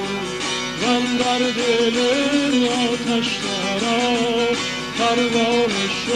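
Tanbur, the long-necked Kurdish lute, playing a continuous melody with a wavering, ornamented line.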